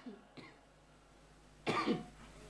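A man coughs once, briefly, near the end, after more than a second of near quiet.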